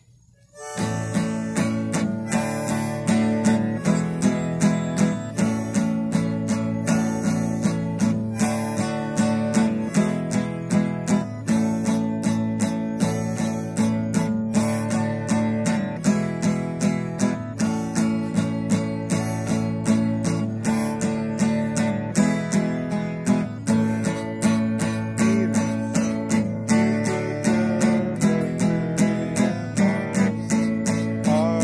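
Acoustic guitar strummed in a steady rhythm in the key of A, starting about a second in, with a D harmonica playing long held notes over it.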